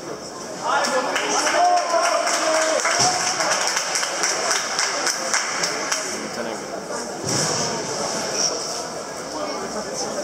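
Speech: a voice near the microphone says "No!" and laughs, over a steady murmur of voices in a large, echoing hall.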